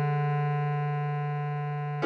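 Bass clarinet holding one long melody note (fingered E4), slowly fading, over a sustained piano chord. A slightly lower note (D#4) starts right at the end.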